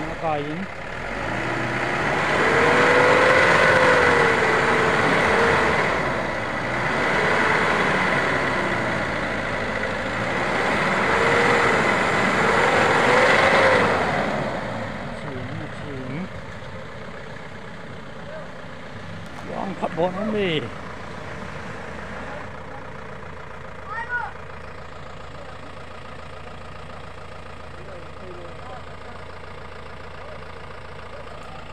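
Mahindra Bolero SUV engine revving in repeated surges, its pitch rising and falling every few seconds as it climbs a muddy, rocky track under load, then dropping to a lower, steady running about halfway through. Brief voices call out twice in the quieter second half.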